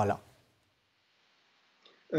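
A man's speaking voice trails off on a last word, then near silence for over a second, broken by a faint click near the end.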